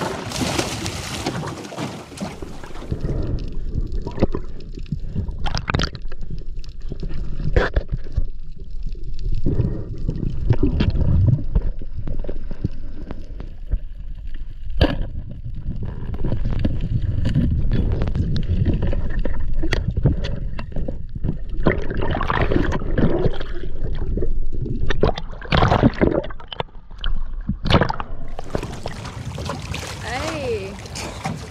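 A diver entering the sea with a splash, then muffled underwater sound through a head-mounted GoPro: low rumbling and gurgling water, with a few sharp clicks. The fuller, brighter sound of the surface returns near the end.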